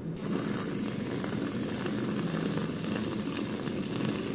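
Whipped cream dispenser spraying cream from its nozzle: a steady hiss that starts just after the beginning.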